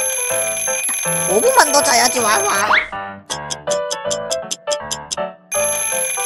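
Cartoon alarm-clock ringing effect, a high steady ring that stops just under three seconds in, followed by a fast run of about a dozen short high ticks as the clock moves on. The ringing starts again near the end, all over background music.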